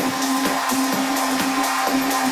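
Electronic dance music from a DJ set, in a stretch without kick drum or bass: a held synth tone with evenly spaced percussive hits over a wash of hiss.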